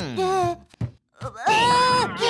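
Wordless cartoon-character voice: a short wavering cry, a brief pause, then a loud, long cry held on one pitch starting about a second and a half in.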